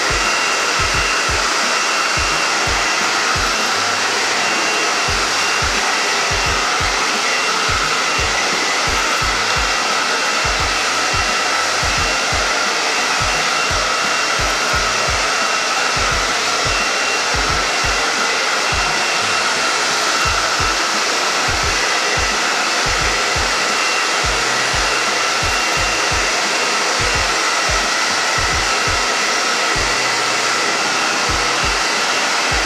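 A handheld hair dryer runs steadily throughout: a constant loud rush of air with a faint steady whine, used to blow-dry natural hair.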